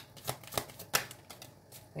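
Deck of tarot cards being shuffled in the hands: a quick, uneven run of sharp card snaps and flicks that dies down about halfway through.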